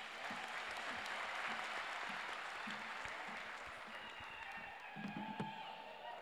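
Audience applauding in a hall, swelling at the start and slowly dying away, with a few low thumps near the end.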